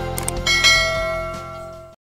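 Subscribe-button sound effect: a couple of quick mouse clicks, then a bell ding about half a second in that rings on and fades away.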